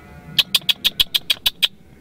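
A rapid run of about nine sharp, high clicks, about seven a second, lasting just over a second. They are a sound made to catch a grey squirrel's attention.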